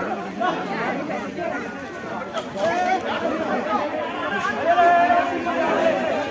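Several people talking and calling out at once, their voices overlapping. One voice is raised and held, louder than the rest, about five seconds in.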